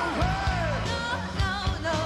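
Live rock band playing: a female singer holds long gliding, wavering notes over electric guitar, bass and drums.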